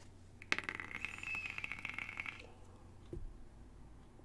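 Electronic cigarette coil crackling and sizzling during a puff of about two seconds, starting about half a second in. A short low thump follows a little after three seconds.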